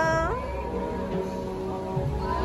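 A woman's high-pitched, drawn-out vocal sound that glides upward and breaks off about half a second in. After it comes background music with a low bass.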